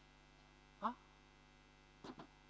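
Steady, faint electrical mains hum, with one short vocal sound from the man at the microphone just under a second in.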